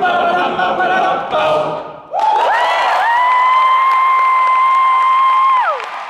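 Male a cappella group singing close-harmony chords. After a short break about two seconds in, a high voice slides up and holds one long, steady note, dropping away near the end, while applause starts underneath.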